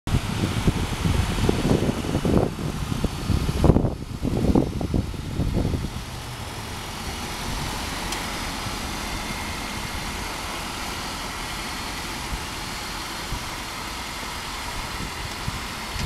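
Irregular low rumbling on the microphone for about the first six seconds, then a steady low hum of a car engine idling.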